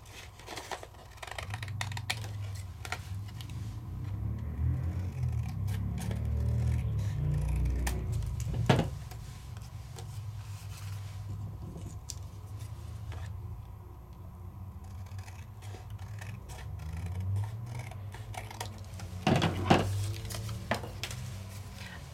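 Scissors snipping through a sheet of crackle-paste-textured paper, a run of short cuts with the paper rustling as it is handled, and one sharper snap about nine seconds in.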